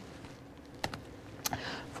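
Two sharp key clicks on a laptop keyboard, about two-thirds of a second apart, over faint room tone.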